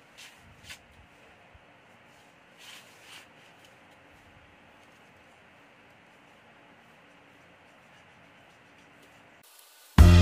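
Faint steady hiss with a few soft scrapes and taps in the first three seconds from hands handling a glass LCD TV panel on a foam work mat.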